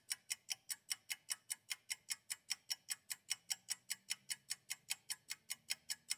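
Steady, even clock-like ticking, about five ticks a second.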